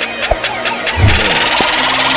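Intro music with sound effects: a ticking pulse of about four beats a second builds up, a deep boom hits about a second in, and a rushing, rising whoosh follows.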